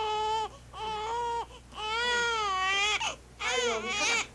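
An infant crying: four long, high wails in a row, each with a short catch of breath between.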